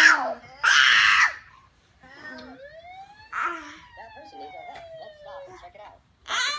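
A baby's loud squeal and then a shriek in the first second or so, followed by a long siren-like wail that rises and then slowly falls over about three seconds.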